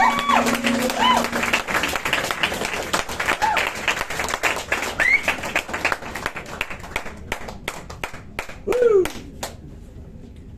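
Club audience applauding and calling out a few whoops at the end of a song. A held note from the band dies away in the first second and a half, and the clapping thins out and stops shortly before the end.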